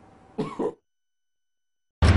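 A woman's short throat-clearing cough about half a second in, cut off abruptly.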